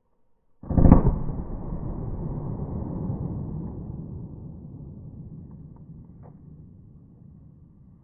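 A shot from a Smith & Wesson Shield EZ .380 ACP pistol, slowed down along with the slow-motion footage: a sudden deep boom about half a second in that rumbles on and slowly fades over about seven seconds.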